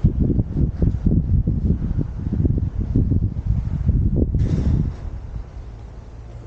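Loud, irregular low rumbling buffeting on the camera's microphone, like wind or handling noise. It starts suddenly and stops about five seconds in.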